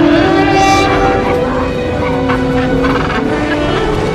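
Soundtrack of an animated dinosaur herd calling: several long, overlapping pitched calls with film music around them.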